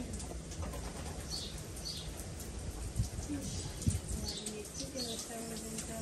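Small birds chirping again and again in the background, with low cooing like a dove's in the second half. There are two short knocks about three and four seconds in.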